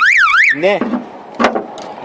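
Electronic car alarm siren warbling up and down, about three sweeps a second, cutting off about half a second in. A short spoken word and a single click follow.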